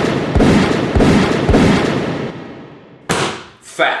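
Loud explosion-like sound effect: a rushing blast with several low booms about half a second apart, fading out over about two seconds. A second sudden hit comes about three seconds in, and a voice starts to say 'fact' at the very end.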